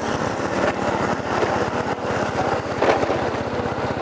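A small motorbike engine running steadily at low road speed, heard as an even low throb with road and wind noise.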